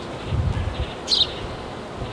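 A bird chirps once, briefly, about a second in, over a faint outdoor hiss, with a short rumble of wind on the microphone just before.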